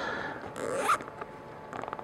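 Nylon cable tie being pulled tight through its ratcheting head: a short zip about half a second in, then a run of fine clicks near the end.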